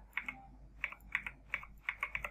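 Typing on a computer keyboard: a quick, uneven run of keystroke clicks.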